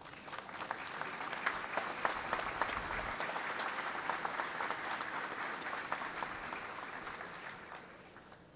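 Crowd applauding: a dense patter of many hands clapping that builds just after the start and fades away near the end.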